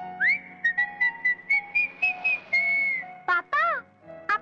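A person whistling a short tune: a quick upward swoop, then a run of short notes near one pitch, ending on a longer held note.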